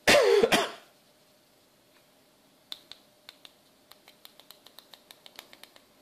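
A short spoken word at the start, then a run of light, sharp clicks from a small plastic servo tester being handled. The clicks begin about three seconds in and quicken to about six a second near the end.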